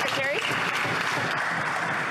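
Applause from a group of parliamentarians clapping, with a voice calling out briefly just after the start.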